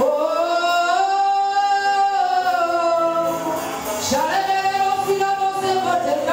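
A woman singing a slow worship song into a microphone, holding long notes: one long phrase, a short breath, and a second long note starting about four seconds in.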